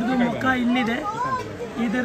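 Several people talking at once: overlapping chatter of onlookers, with no words standing out clearly.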